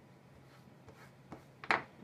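Kitchen utensils handled on a plastic cutting board: a few light clicks, then a short, louder scrape or clatter near the end, over a low steady room hum.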